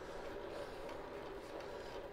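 Steady rolling noise of a road bike ridden on tarmac at about 15 mph: tyre hum and drivetrain whirr with light wind on the microphone.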